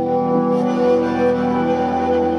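Live band playing an instrumental passage of held notes, with no singing.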